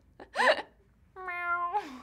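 A woman imitating a cat with her voice: a short rising-and-falling mew about half a second in, then a longer held meow that drops in pitch at the end.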